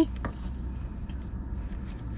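Faint light rustling and clicking of a plastic takeout container and its paper liner as boneless wings are picked out by hand, over a steady low hum in a car cabin.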